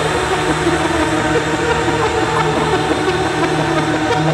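Drum and bass breakdown: a dense, noisy, rumbling synth texture over a held low bass note, with no drum beat.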